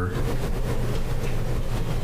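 Steady low hum with background noise from a courtroom's microphone and sound system in a pause between speakers, at about the same loudness as the speech around it.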